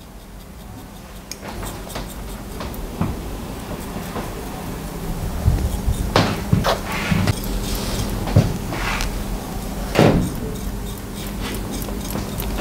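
Straight razor slicing through damp hair at the nape in short scraping strokes, slide-cutting the ends to texture them. A few strokes come louder around the middle and near the end, over a steady low hum.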